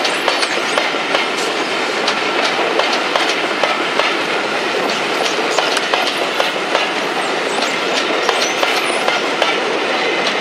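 A train of maroon passenger coaches rolling past at close range, the wheels clicking over rail joints and pointwork in an irregular stream of sharp clicks over a steady rumble, with a faint wheel squeal.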